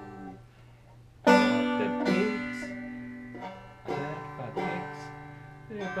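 Banjo chords strummed: a loud strum about a second in rings out and fades, followed by two more strums in the second half.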